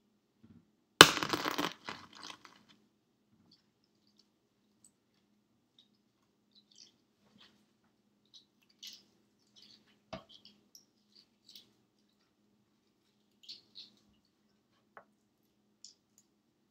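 Hard-boiled egg shell being cracked and peeled by hand: one loud, sharp crack about a second in, then faint, scattered crackles and clicks as bits of shell come away.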